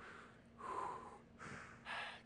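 A person breathing hard while straining through an isometric hold: two audible breaths, one about half a second in and a sharper one near the end.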